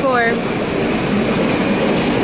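A short falling vocal sound from a woman at the start, then a loud, steady rushing noise with no clear tone.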